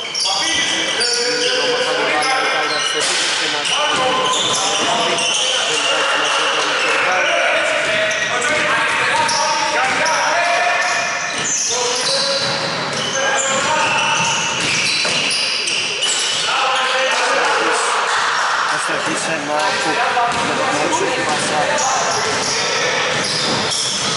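A basketball bouncing repeatedly on a hardwood court during live play, with voices throughout, in a large echoing sports hall.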